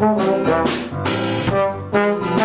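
A small jazz combo playing: trombone over electric keyboard and a drum kit.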